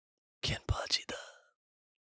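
A man's voice whispering a short word, "Ken…", about half a second in; the rest is silence.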